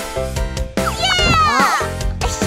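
Cartoon background music with held notes. About a second in, a short meow-like cartoon voice sound slides up and then falls in pitch over the music.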